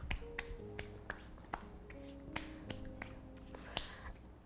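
Wooden spoon knocking and scraping against a glass mixing bowl while thick black fruit cake batter is folded: a string of light, irregular clicks. Soft background music plays underneath.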